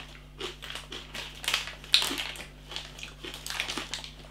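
A person chewing hard, double-cooked pork crackling: irregular crunches.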